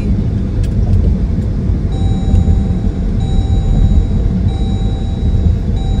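Steady low road and engine rumble heard inside the cabin of a moving car. From about two seconds in, a faint thin high tone sounds in spells of about a second each, with short gaps between them.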